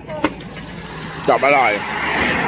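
Road traffic: a pickup truck driving past on the road, its tyre and engine noise swelling near the end.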